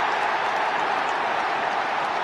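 Football stadium crowd cheering and applauding a goal just scored: a dense, steady wall of crowd noise.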